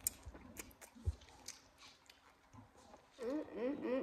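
A bite into a pickled yellow chili pepper and crunchy chewing, with sharp crunches right at the start and about a second in. Near the end comes a run of short, pitched sounds, each rising and falling in pitch like a voice.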